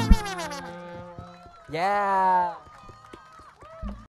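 The band's last held note slides down in pitch and fades away within the first half second. About two seconds in comes one loud, held shout from a performer's voice through the PA, followed by a few light knocks and a low thump near the end.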